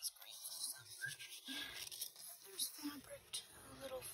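Paper and fabric rustling and crinkling as journal pages are folded back and a piece of cotton fabric is pulled out and unfolded, with faint murmured speech.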